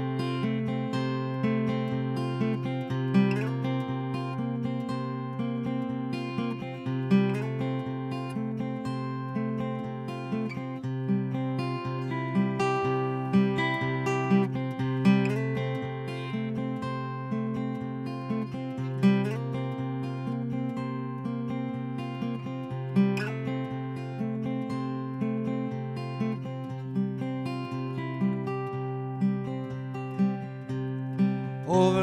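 Solo acoustic guitar playing a picked riff over a steady low bass note, the figure repeating about every four seconds: the instrumental introduction to a song.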